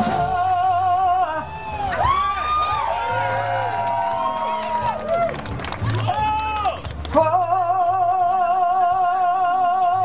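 Electric blues band playing live with a female singer. A long held note with vibrato opens it and returns at about seven seconds, with sliding, bending vocal phrases in between.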